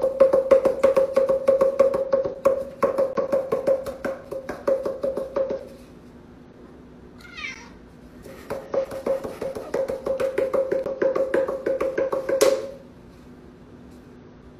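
Two cardboard tubes drummed rapidly on a cat's back: a fast run of hollow, pitched taps that stops for a few seconds, starts again and ends on a harder hit. In the pause the cat gives one short meow that rises and falls in pitch.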